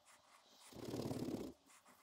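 Cloth rubbing over a small nickel-plated bolt while it is hand-polished, one rough scrubbing stroke about halfway through.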